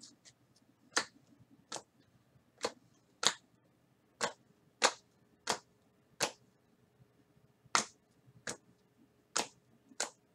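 Trading cards set down one at a time onto piles on a table, each landing with a sharp click. The clicks come about every two-thirds of a second, with a slightly longer pause about seven seconds in.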